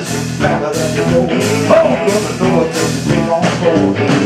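Live blues-gospel band playing an up-tempo song, with electric guitar, a steady drum beat and singing.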